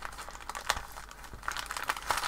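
Soft crinkling and rustling of a paper bag as fingers pick at and peel washi tape off it, with small irregular clicks, one sharper than the rest about two-thirds of a second in, and busier rustling near the end.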